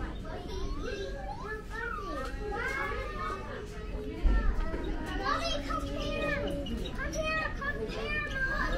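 Young children's high voices chattering and exclaiming, with no clear words. A low thump sounds about four seconds in.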